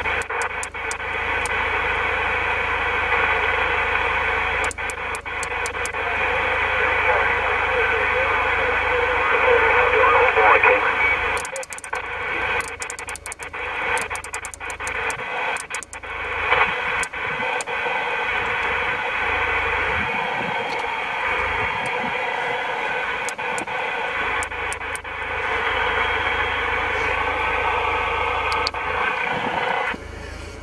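President Lincoln II+ CB transceiver's receiver hissing on single sideband as it is stepped through 27 MHz channels, with static and faint, garbled sideband voices. A run of sharp clicks and crackles comes about halfway through.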